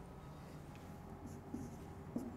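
Faint marker strokes squeaking and scratching on a whiteboard, starting a little past the middle, over a low steady room hum.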